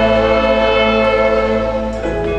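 Orchestra with violins and a soprano saxophone playing a long sustained chord, the held notes easing off a little near the end.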